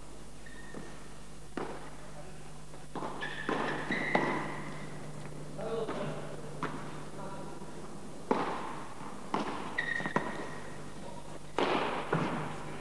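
Padel rally: a series of sharp ball strikes (paddle hits, bounces on the court and off the glass walls), irregular and roughly a second apart, with a few brief high squeaks.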